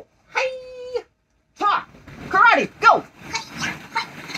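Wordless high-pitched yells: one held cry, then two that rise and fall. Near the end, plastic ball-pit balls rattle as they are kicked.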